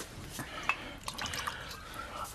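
A drink poured into a glass, with a faint trickle and a few light clicks of glass.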